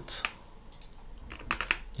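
Clicking at a computer: a couple of sharp clicks near the start, then a quick run of three or four clicks about a second and a half in.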